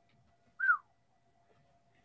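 A single short whistle-like tone that falls in pitch, about half a second in, over a very faint steady tone.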